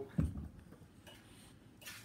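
Faint clicks and handling of eggshell halves as an egg is separated over a metal shaker tin, with one dull thump about a quarter second in and a short scratchy sound near the end.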